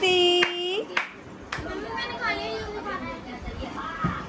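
Hands clapping a steady beat, a little under two claps a second, stopping about one and a half seconds in. Over the first claps a voice holds one long note, and voices go on more softly after that.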